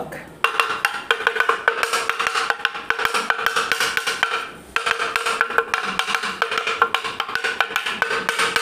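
Wood block struck repeatedly in a fast, even rhythm, each strike giving a hollow, pitched knock. There is a short pause about four and a half seconds in before the strikes resume.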